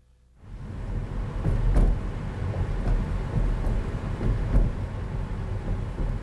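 Road noise inside a moving car: a steady low rumble with a few sharp knocks and bumps, starting suddenly about half a second in.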